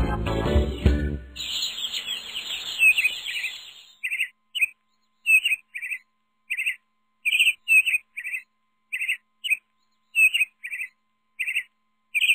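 Small songbirds chirping: a dense burst of high twittering as the song's music ends, then short separate chirps repeating about every half second.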